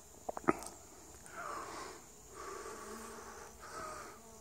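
Honeybees buzzing in flight, two faint passes that swell and fade, with a few light clicks in the first half-second.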